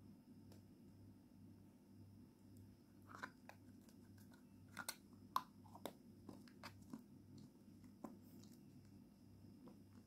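Faint clicks and light scraping of a metal teaspoon scooping petroleum jelly from a plastic tub and touching a glass bowl. There are a handful of small ticks between about three and eight seconds in, over a low steady hum.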